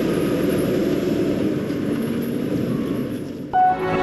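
Tipper truck's diesel engine running as the truck drives away over a gravel site, a steady low rumble. About three and a half seconds in, a short musical jingle starts over it.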